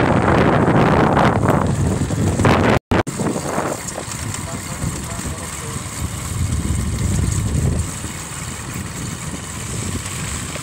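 Wind buffeting the phone's microphone over a low travelling rumble, with loud voices over it in the first few seconds. The sound drops out briefly about three seconds in, then carries on steadier and quieter.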